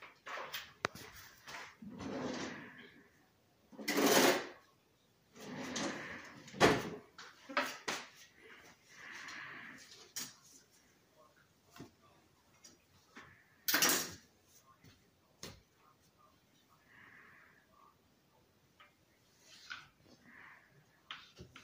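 Kitchen handling noises: a drawer sliding and knocking shut, with scattered knocks and clatters on a tiled countertop. The loudest knocks come about four seconds in and again about fourteen seconds in, with softer rustling between.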